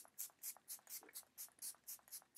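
Makeup Revolution Crystal Aura fixing spray misted onto the face with rapid pump spritzes, about four short hisses a second.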